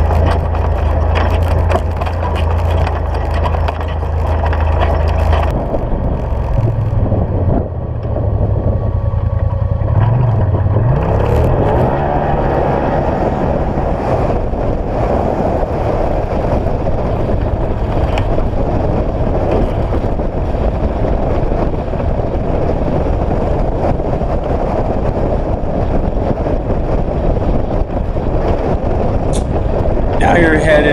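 UTV engine running under way along a dirt road, with tyre and road noise. The engine note holds steady at first, shifts up and down for a few seconds as the speed changes, then settles into steady cruising.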